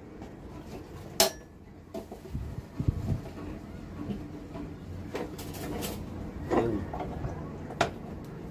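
Sharp clicks and light knocks of plastic panel switches being handled and pressed into a boat's helm console panel, the loudest click about a second in.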